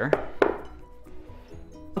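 A spatula knocks twice against a glass mixing bowl, about half a second apart, while pressing butter into flour. Soft background music plays underneath.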